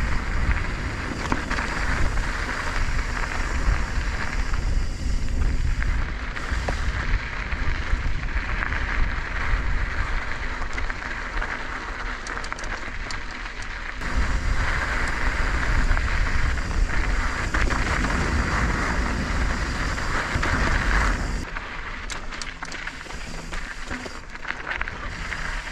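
Mountain bike rolling along a loose, gravelly dirt trail, with the tyres hissing and crunching and wind buffeting the camera microphone as a low rumble; the noise eases briefly twice and drops near the end.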